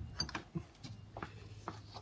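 A few light clicks and taps as a hand works a door lock's handle and latch, over a faint steady hum.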